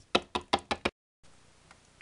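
A hard plastic Littlest Pet Shop figurine tapped down on a tabletop as it is hopped along: about six quick, sharp taps in under a second. Then the sound cuts out abruptly.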